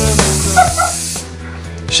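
Aerosol hairspray can spraying for just over a second, a steady hiss that cuts off suddenly, over background music.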